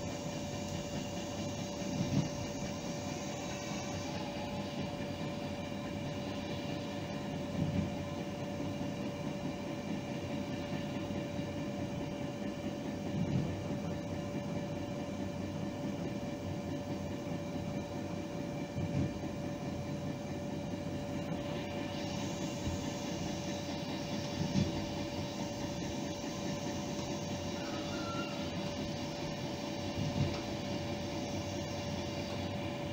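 A train running along the track, heard from inside the driver's cab: a steady rumble with a constant whine and a short knock about every five to six seconds.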